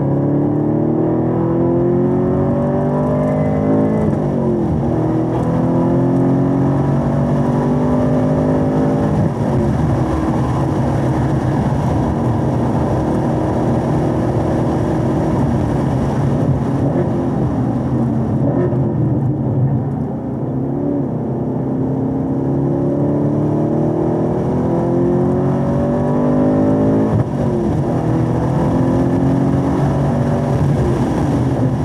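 Camaro SS 1LE's V8 heard on board at full throttle, revs climbing and dropping sharply at two upshifts about four and nine seconds in. The engine then holds a steady pitch at speed, dips and picks up again around twenty seconds in, and climbs hard once more before easing off near the end.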